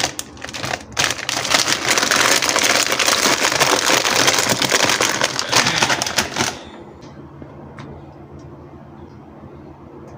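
Plastic bags of frozen food crinkling and rustling as a hand shuffles through them in a freezer drawer, a dense crackling that stops about six and a half seconds in. A low steady hum remains after.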